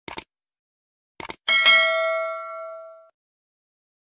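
Subscribe-button sound effect: two quick mouse clicks, two more about a second later, then a bright notification-bell ding that rings out and fades over about a second and a half.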